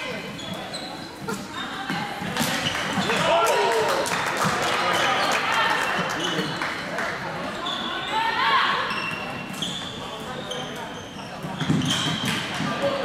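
Live floorball play in a large sports hall: sticks clacking on the plastic ball and floor, with players calling out and the hall's echo.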